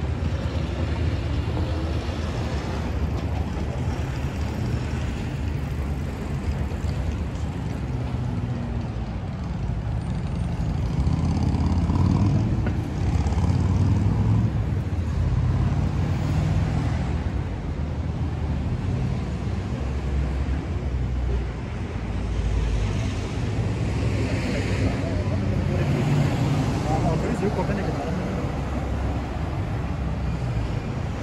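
City street ambience: steady road traffic with vehicles passing, a low rumble that swells and fades a few times, and indistinct voices of passersby.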